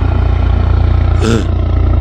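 Light helicopter passing low overhead: a loud, steady, rapid beat of the main rotor.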